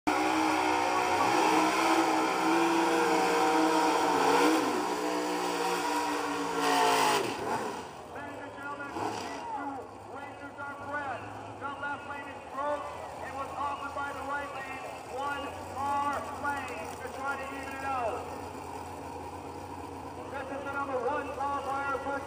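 Drag car burnout: engine revving hard with the rear tyres spinning, cutting off sharply about seven seconds in. After that, engines idling low under people talking in the crowd.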